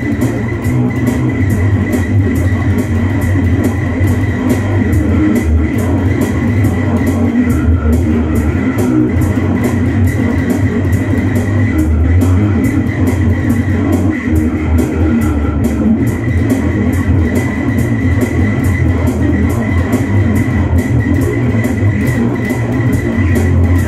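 Electric bass guitar played along to a rock rhythm track, with a steady, even beat of sharp hits over the sustained low bass notes; an instrumental stretch with no vocals.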